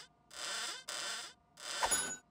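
A small toy barrier arm being worked off its post and plugged back on, making about four short scraping sounds of roughly half a second each. A brief high ping comes near the end.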